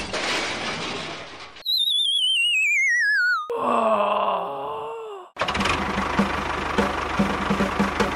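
Edited-in cartoon sound effects. A fading noisy clatter gives way to a whistle that falls steadily in pitch with a wobble for about two seconds. A short groaning voice follows, then busy music with a regular beat.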